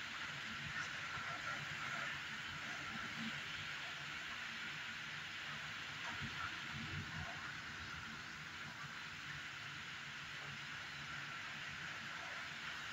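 Steady hiss of heavy, wind-driven rain, with a faint low rumble around the middle.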